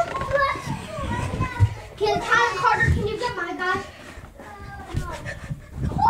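Children's voices calling out and chattering while they play, high-pitched, with a few low thumps from movement and handling of the phone.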